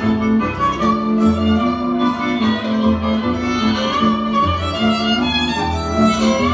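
Hungarian folk string-band music for a csárdás: a fiddle plays the lead over sustained accompanying chords and a bass line.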